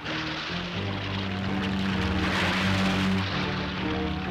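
Animated-series background music under a steady vehicle engine sound effect, with a rushing noise running alongside it.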